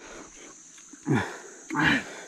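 Steady high drone of insects in the grass, with two short vocal sounds over it: a brief falling call about a second in and a louder, rougher one near the end.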